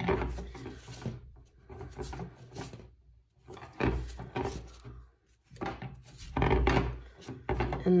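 Green floral tape being stretched and wound around the bundled wire bars of a wreath frame, with hands and wire rubbing against a wooden tabletop: rubbing and handling noise in about four bursts with short pauses between them.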